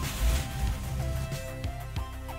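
Background music with held melodic notes and a low bass line.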